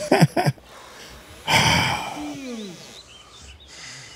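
A loud rushing breath about one and a half seconds in, followed by a man's voice sighing downward in pitch.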